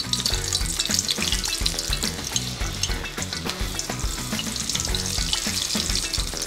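Batter-coated shrimp and seafood deep-frying in a pan of hot oil: a steady, dense crackling sizzle.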